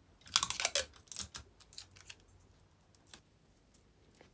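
Paper strips and sticky tape being handled and pressed down onto card: a few short crinkly rustles in the first second and a half, then a single light tick about three seconds in.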